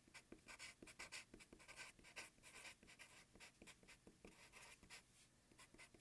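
Felt-tip marker writing on paper: faint, quick scratchy strokes as letters are formed.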